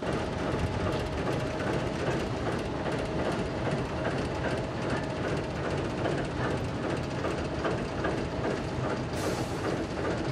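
Railway transporter carrying a horizontal Soyuz rocket rolling along the track: a steady rumble with regular clicking of wheels and running gear. A brief hiss comes in about nine seconds in.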